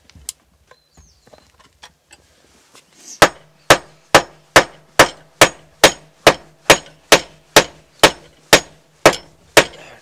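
Steady hammer blows on a hard object, a little over two a second, starting about three seconds in.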